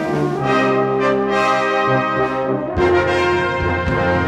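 Brass band playing held chords in a slow passage. About three-quarters of the way in, the low brass comes in and the sound fills out.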